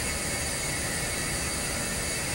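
Steady background hiss of room tone with no distinct event in it.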